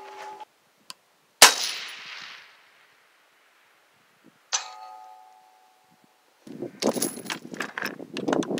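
A single .223 rifle shot about a second and a half in, echoing briefly. About three seconds later comes the ringing of a steel target hit at 1,200 yards, a clear bell-like tone that fades, heard through a target camera. Near the end, a quick run of metallic clicks and clatter as the rifle's bolt is worked to load the next round.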